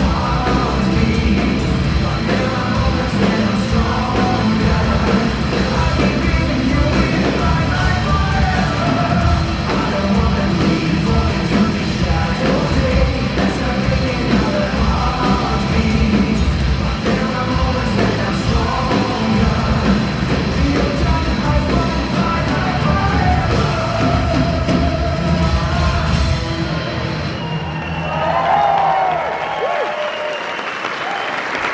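A metal band playing live: a singer with distorted electric guitars, bass and drums, heard loud from the crowd in a concert hall. About 27 seconds in, the full band sound drops away as the song ends.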